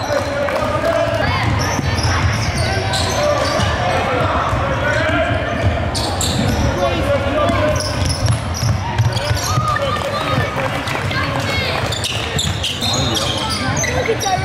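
Basketball bouncing on a hardwood court during play in a large gym, with sharp impacts scattered through, under indistinct talking voices.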